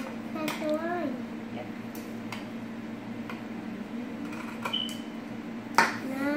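Small children's scissors snipping paper: a few scattered sharp clicks, the sharpest near the end, over a steady low hum, with a brief voice about half a second in.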